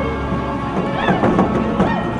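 Background music with short, high shrieks from a voice that rise and fall in pitch, starting about a second in and again near the end.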